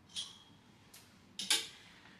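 A brief swish of fabric, then a sharp click about one and a half seconds in: a clothes hanger's metal hook set onto a metal clothing rail.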